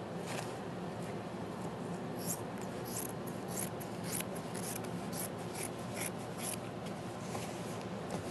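Fabric scissors cutting through denim: a faint, irregular series of short snips and crunches as the blades work along the jeans leg.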